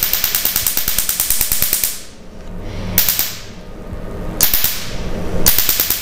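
Tattoo-removal laser firing pulses into the skin over a tattoo: rapid trains of sharp snapping clicks in several bursts with short pauses between them.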